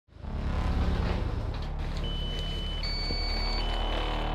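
A vehicle engine running at a low, steady idle, with a series of held high electronic beeps from about halfway through that step up and down in pitch.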